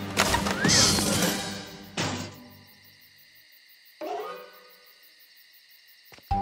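Cartoon sound effects over soft background music: a loud noisy burst in the first second and a half, a sharp thunk about two seconds in, and a falling tone about four seconds in.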